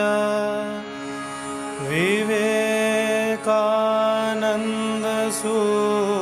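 Chanted devotional invocation, a single voice holding long steady notes and sliding up into a new held note about two seconds in.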